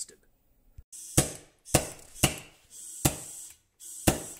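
Propane hissing from a torch head into a copper-pipe pulsejet, broken by four sharp single pops as the fuel-air charge ignites in the pipe one combustion at a time. It is not yet firing continuously.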